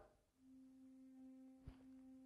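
Near silence, with a faint, steady held note of background music fading in about half a second in. A small click near the middle.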